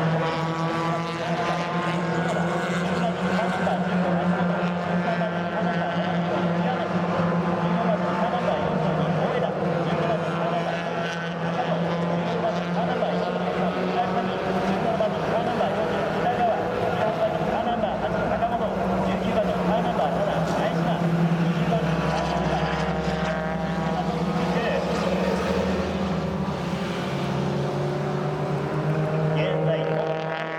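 Mazda Roadster race cars' four-cylinder engines running at race speed through a corner, several engines overlapping, their pitches rising and falling as the cars pass.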